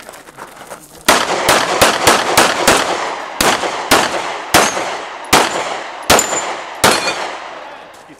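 Handgun fired in a string of about a dozen shots during a practical shooting stage: six quick shots roughly a third of a second apart, then six more at wider, uneven spacing as the shooter moves between targets.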